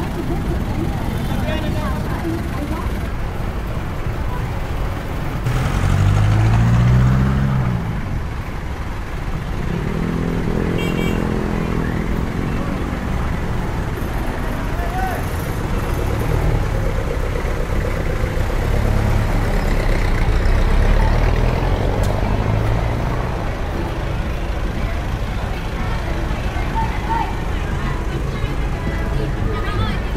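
Outdoor walking ambience: a steady low rumble of road traffic mixed with the voices of people nearby, swelling louder about seven seconds in and again about twenty seconds in.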